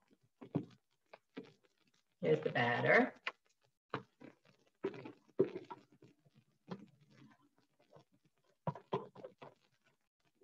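Soft scrapes and light taps of a utensil scooping thick cake batter from a bowl onto a parchment-lined sheet pan, with a brief louder voice-like sound about two seconds in.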